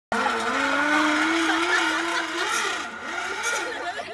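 Zip line trolley running along the cable, a steady whine that rises slightly in pitch as the rider gathers speed, then fades over the last second or so as it moves away.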